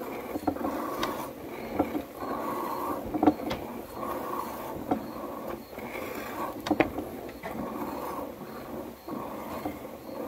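Goat being hand-milked into a stainless steel pail: rhythmic squirts of milk hitting the pail, about one every three quarters of a second. A few sharp knocks come in between.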